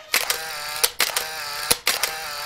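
Edited-in title-card sound effect: a sustained ringing tone crossed by sharp clicks roughly once a second.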